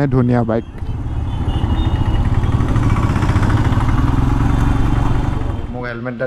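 Royal Enfield Himalayan's single-cylinder engine running steadily while riding, a low rumble of even firing pulses with road and wind noise.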